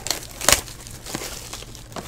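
Plastic shrink wrap crinkling and tearing as it is pulled off a sealed trading-card hobby box, with one sharper crackle about half a second in.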